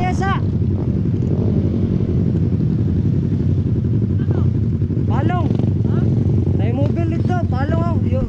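Motorcycle running at road speed with heavy wind noise on the helmet microphone, a steady low rush. Short raised voice calls break through at the start, about five seconds in and several times near the end.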